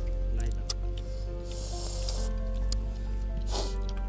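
Background music with held tones over a steady bass. Over it, wet slurping of noodle soup: a drawn-out slurp about a second and a half in, and a shorter one near the end.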